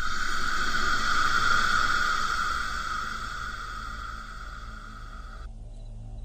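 A steady buzzing hiss, loudest in the first couple of seconds, slowly easing and then cutting off suddenly about five and a half seconds in, over a faint low drone.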